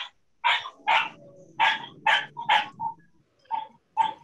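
A dog barking repeatedly in the background, about six or seven short barks spread evenly over a few seconds.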